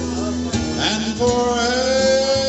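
A man singing karaoke into a microphone over a recorded guitar backing track, with a long held note starting a little after a second in.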